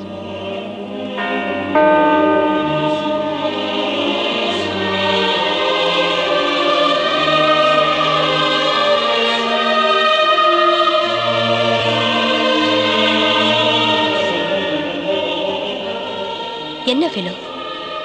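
Choral film music: a choir singing long held chords over deep sustained bass notes. It swells louder about two seconds in and fades near the end.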